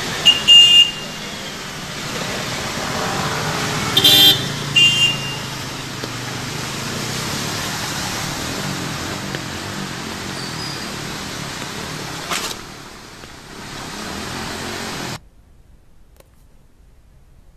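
Road traffic driving through floodwater: a steady wash of engine and tyre-through-water noise, with a short car-horn honk near the start and two more about four seconds in. The sound cuts off abruptly shortly before the end.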